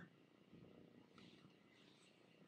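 Near silence: room tone, with a faint, brief stir of sound about half a second in.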